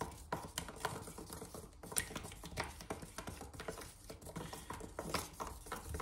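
Wooden stir stick mixing thick chalk paint in a plastic tub: irregular soft clicks and scrapes of the stick against the tub's sides and bottom.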